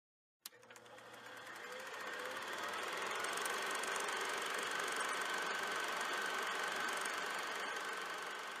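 A click, then a steady mechanical whirring noise that fades in over about two seconds and then holds steady.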